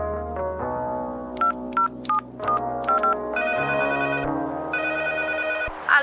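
Electronic background music with a run of short beeps, then a telephone ringtone sounding twice.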